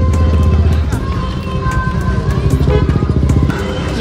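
A motor vehicle engine running close by, with music and voices in the background.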